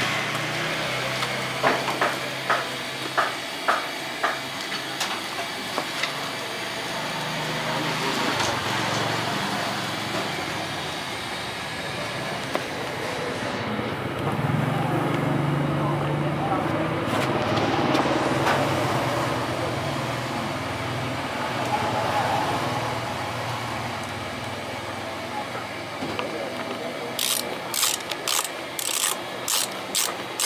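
Socket ratchet wrench clicking in a quick, regular run of about three clicks a second near the end as a bolt on the motorcycle's bodywork is turned. Earlier there are a few sharp clicks, and a steady noisy background runs in between.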